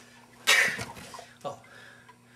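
A single sharp, breathy vocal burst about half a second in, fading quickly, followed by a short spoken "Oh."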